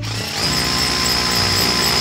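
Makita cordless drill running steadily, boring into a concrete wall with a masonry bit, with a steady high whine from about half a second in.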